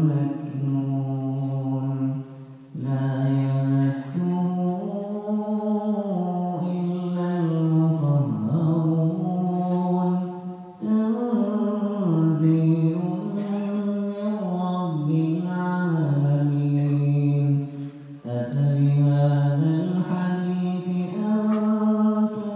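A man reciting the Quran in a slow, melodic chant (tajwid), drawing out long notes that rise and fall in phrases several seconds long. There are brief pauses for breath about three seconds in, near the middle, and about eighteen seconds in.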